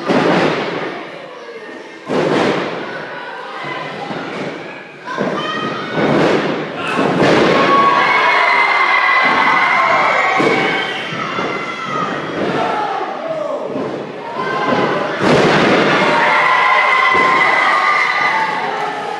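Wrestlers' bodies landing on the wrestling ring mat with heavy thuds, echoing in a large hall. The thuds come near the start, about two seconds in, several times around five to seven seconds, and again about fifteen seconds in. The crowd shouts and cheers throughout, loudest in the second half.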